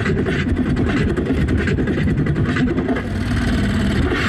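Beatboxing through a stage PA: a deep, continuous bass buzz under sharp snare-like hits in a steady beat.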